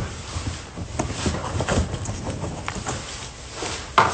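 A large cardboard box being opened and handled: cardboard rustling and scraping, with scattered knocks.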